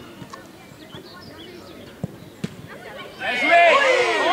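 Two sharp thumps about two seconds in, a football being struck at goal, against faint voices. Near the end several people burst into loud shouting and cheering, with cries of "bien joué!".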